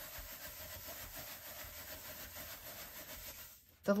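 Hands rubbing and pressing a sheet of kitchen roll over a stencil on card: a faint, steady papery rubbing that stops shortly before the end. The pressing lets the ink sit and print onto the card.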